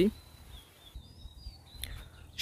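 Faint background noise in a pause between words: a low hum, faint high chirps and one short click near the end.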